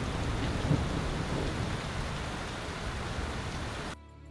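Heavy rain pouring down in a thunderstorm: a steady hiss of rainfall with a low rumble underneath.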